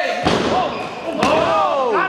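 Wrestler's body landing heavily on the ring canvas just after the start. About a second later comes a sharp slap of a kick striking, with excited voices calling out over it.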